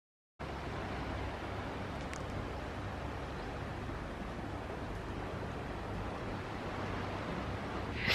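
A split second of dead silence, then steady outdoor ambient noise with a low rumble.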